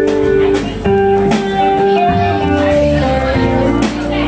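Live band playing a slow song's instrumental passage: electric guitars, bass, keyboard and drums with regular cymbal strokes, the chords changing about a second in and again near the end.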